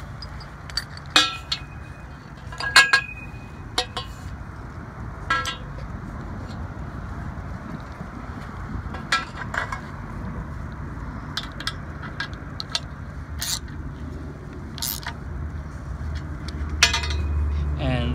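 Galvanized steel pipe and its flanged metal base fitting knocking together as they are handled and fitted. There are several sharp, ringing metal clinks in the first few seconds and lighter taps later, over a low steady rumble.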